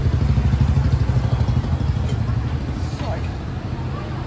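Low, steady rumble of a nearby idling engine, such as a motorcycle, in street noise; it eases a little near the end.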